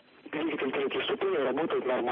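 A voice speaking over a radio communications loop, narrow and noisy.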